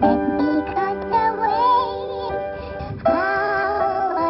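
Intro music of a rap track: sustained keyboard chords with a wavering, gliding melody line over them, which PANN hears as synthetic singing. A new, louder chord comes in about three seconds in.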